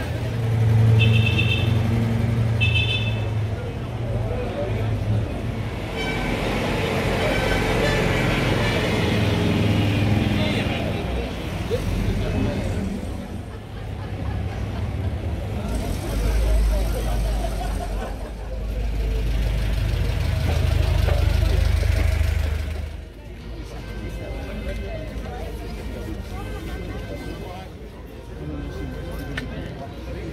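Old cars and a moped running at low speed as they pass close by one after another, their engine hum swelling and fading, with crowd voices around. Two short horn toots near the start.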